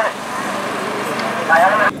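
A motor vehicle going by on the road: a steady rushing noise with a low engine hum.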